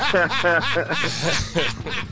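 A man laughing, a run of quick chuckles that fades out near the end.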